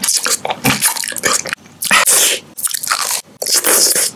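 Close-miked crunching and chewing of candy and snacks: a quick run of sharp, crunchy bites, broken by a few short pauses.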